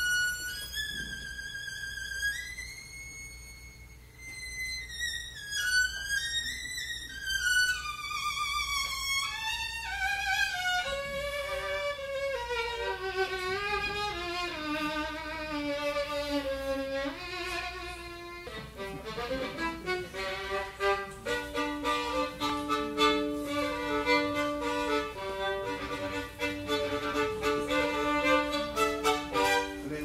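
Solo violin, bowed. It opens with high held notes that waver and slide, then the melody steps down into the low register, and over the last third it repeats short bow strokes on low held notes.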